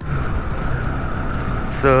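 Bajaj Pulsar NS200's single-cylinder engine running steadily while riding, with road and wind noise, heard from the rider's seat.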